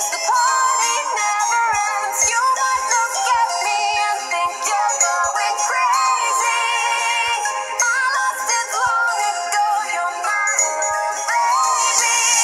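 A song with a synthetic-sounding sung vocal over instrumental backing, the melody wavering and gliding in pitch.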